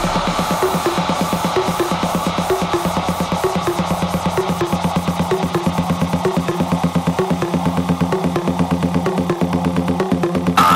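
Electronic dance music from a DJ mix: a steady, driving beat at about two beats a second under a repeating bass and synth figure, with the deepest bass cut away.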